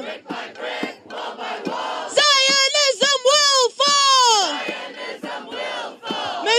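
Call-and-response protest chanting: a lead voice shouts chant lines through a microphone from about two seconds in, and a crowd shouts back at the start and again near the end.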